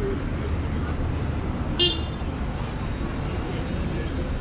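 Steady low rumble of street traffic, with one short, high-pitched beep about two seconds in.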